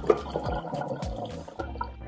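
Hot cooking water poured off boiled potatoes from a tilted saucepan, splashing into a stainless steel sink, under background music with a steady beat.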